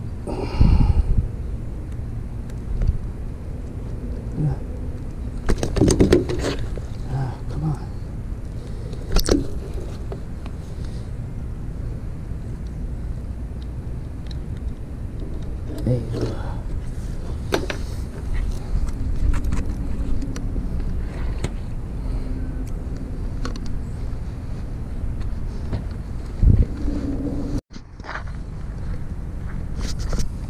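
Steady low wind rumble on the microphone, with scattered knocks and handling bumps as a caught tautog on a rope stringer is handled on a wooden dock.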